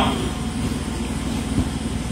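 A pause in a man's speech into a microphone, leaving a steady low rumble of background noise.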